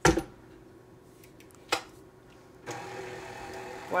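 Two sharp knocks, then about two-thirds of the way through a KitchenAid stand mixer's motor switches on and runs with a steady hum.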